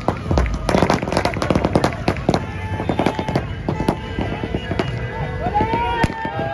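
A string of firecrackers going off: many sharp cracks and pops in rapid, irregular succession.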